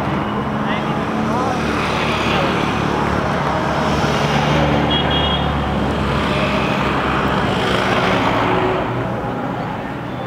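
A motor engine running close by, its low hum swelling through the middle and fading near the end, over a steady wash of outdoor noise.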